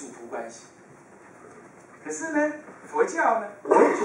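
Speech only: a man's voice over a handheld microphone, in a few short phrases with pauses between them, one of them drawn out on a held pitch.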